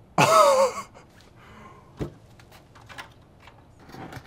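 A man's short vocal sound, falling in pitch, then a sharp knock about two seconds in and a few light taps as a large cardboard fiber shipping drum is handled.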